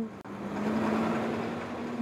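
A converted school bus working as a city route bus drives close past: steady engine and road noise with a low hum, starting a moment in.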